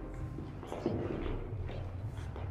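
Footsteps on a hardwood floor over a low steady hum.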